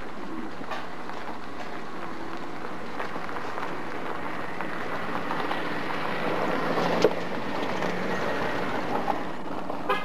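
Steady running noise of a vehicle, growing louder through the middle and easing off near the end, with one sharp click about seven seconds in.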